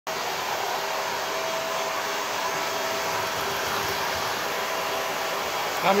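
Handheld hair dryer running steadily while drying a small white dog's fur: an even rush of air with a faint steady motor whine.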